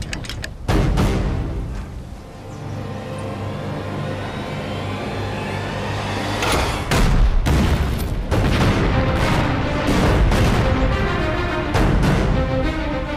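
War-film soundtrack of artillery and explosions over dramatic music. A boom comes about a second in, then the music carries alone for several seconds. From about six and a half seconds in, a rapid run of explosion booms follows.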